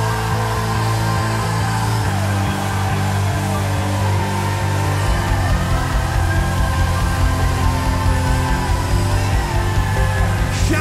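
Live worship band playing loud, heavy rock-style music over sustained low chords, with a driving low beat coming in about halfway.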